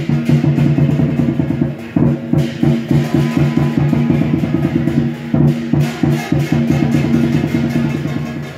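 Lion and dragon dance percussion: a large drum beaten in fast, driving strokes with cymbals clashing over it, breaking off briefly about two seconds in.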